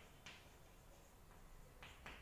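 Chalk writing on a blackboard, heard faintly: two short clicks of the chalk striking the board, one just after the start and one near the end, over room hush.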